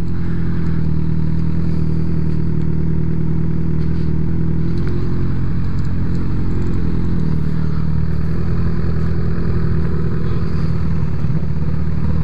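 Motorcycle engine running at low, steady revs as the bike rolls slowly, heard up close from the rider's own bike.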